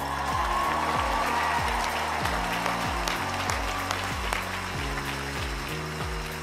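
A large crowd applauding and cheering, heard in a wide open space, over steady low background music.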